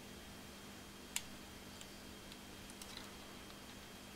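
Faint, sparse clicks and ticks of wires and tools being handled in a metal amplifier chassis, one sharper click about a second in, over a faint steady hum.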